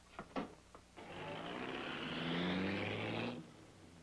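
A few short knocks, then a car engine revving up, its pitch rising slightly for about two seconds before it drops away.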